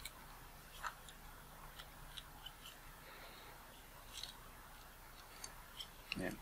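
Faint, scattered small clicks and ticks of a precision screwdriver tightening the tiny screws in a camera lens's metal mount, a few light knocks several seconds apart.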